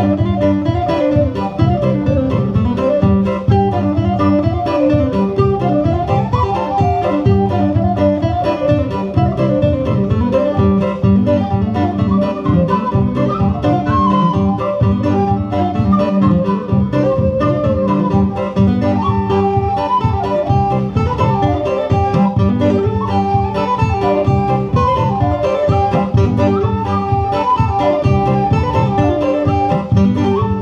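An acoustic guitar strumming chords under a whistle playing a fast reel melody.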